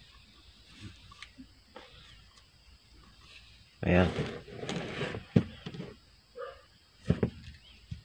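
Mostly quiet, with a few sharp clicks in the second half and a short spoken word about four seconds in.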